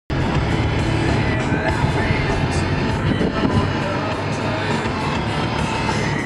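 Steady road and engine noise inside a moving car's cabin, with music playing over it.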